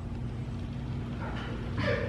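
Steady low hum of room tone, with a faint, brief voice-like sound in the second half, clearest just before the end.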